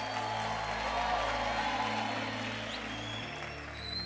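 Soft background music of sustained, held chords under a pause in the preaching, changing chord about three seconds in, with a faint haze of audience noise.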